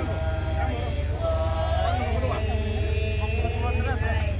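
Several people's voices holding long, drawn-out sung calls that overlap one another, over a steady low rumble.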